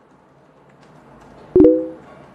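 A short electronic tone of two pitches sounding together, starting sharply about a second and a half in and fading away within half a second.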